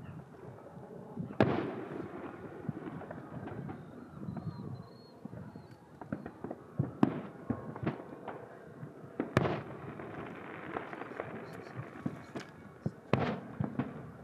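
Aerial fireworks shells bursting in a display, a series of sharp booms at irregular intervals, the loudest about a second and a half, seven and nine seconds in, with a quick cluster of reports near the end.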